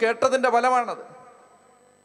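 A man's voice preaching through a microphone for about the first second, then fading away, leaving a faint steady hum.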